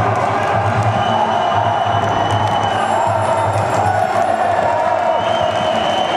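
Crowd of spectators in a sports hall cheering and shouting over loud music with a regular low beat.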